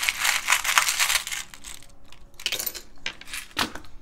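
Small charms clinking and rattling against each other in a wooden tray as a hand stirs through them, a dense jingle for about the first second and a half, then a few separate clicks.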